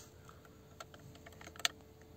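A few faint clicks from the Volkswagen Touran's multifunction steering-wheel buttons being pressed, the sharpest about one and a half seconds in.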